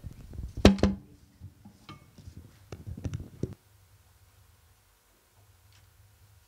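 Knocks and rustle of a handheld microphone being handled, sharpest about half a second in. Fainter clicks and rustle follow, then only a low hum from about three and a half seconds in.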